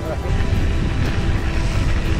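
Background music laid over the low rumble of a mountain bike rolling over rough, bumpy ground, with a rushing noise that grows about a second in.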